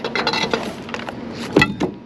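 A heavy rusted metal pipe scraping and rustling as it is hauled up through the bridge railing, then set down hard on the wooden deck planks with one loud knock about one and a half seconds in.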